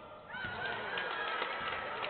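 Basketball shoes squeaking on the hardwood court as players cut and stop, a cluster of short squeaks about half a second in, over the hum of a sparsely filled arena.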